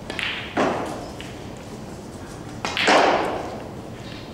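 Snooker balls being struck in a large hall: a knock as the cue hits the cue ball and the balls meet, then a louder thud about three seconds in as a ball hits a cushion, each with a brief ring in the room.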